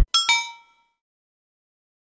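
An edited chime sound effect: two quick bright bell-like dings in succession, ringing briefly and dying away within about half a second.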